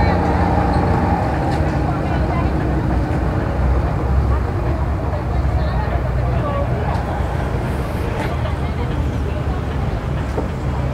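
Boat engines idling with a steady low rumble, under faint background voices.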